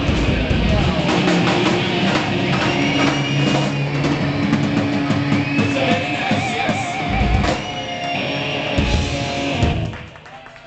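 Live rock band playing with electric guitar, electric bass and drum kit, with heavy drum hits in the last few seconds. The music stops suddenly right at the end as the song finishes.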